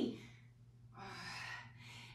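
A woman's breath from exertion, a single audible breath of about a second starting halfway in, as she holds a Superman back-extension lift. A faint steady low hum runs underneath.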